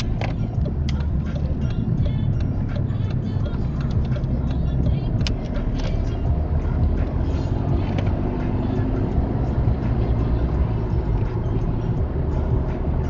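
Inside-cabin road and engine noise of a car driving: a steady low rumble with scattered light clicks and rattles. About six seconds in, a faint rising engine note comes in as the car speeds up.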